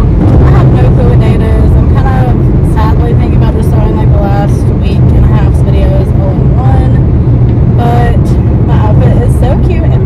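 Steady low road and engine rumble inside a moving car's cabin at highway speed, with a woman's voice talking over it.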